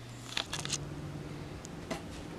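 Quiet kitchen room tone: a low steady hum that shifts slightly higher in pitch about half a second in, with a few faint short clicks.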